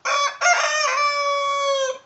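Rooster crowing once, loud: a short opening syllable, a brief break, then one long held note that cuts off sharply at the end.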